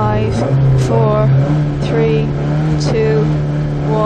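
Vauxhall Nova rally car's engine held at raised, steady revs while stationary on the start line, ready to launch; the note steps up slightly about half a second in and then holds.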